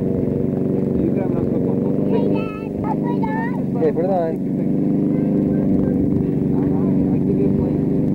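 A small engine running steadily at an even pitch, with a child's high voice calling out briefly in the middle.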